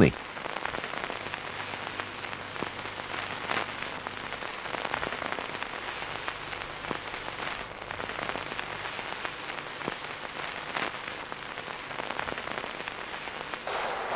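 Steady crackling hiss with scattered faint clicks and a faint low hum, like the surface noise of an old film soundtrack.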